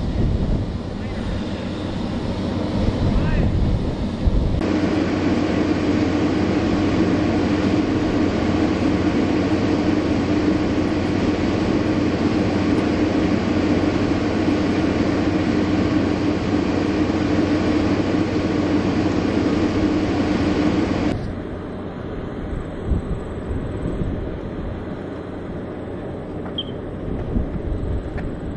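Steady mechanical drone of machinery running on an airfield flight line, with one constant low tone, plus wind on the microphone. About four seconds in the drone starts abruptly. It cuts off about 21 seconds in, leaving quieter wind-buffeted ambience.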